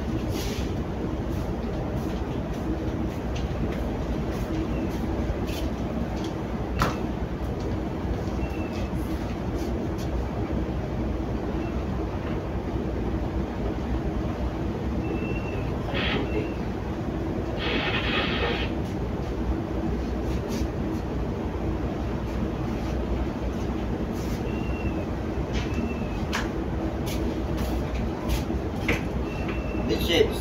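Cargo ship's engine running steadily under way, a continuous low rumble with a steady hum, heard from the bridge.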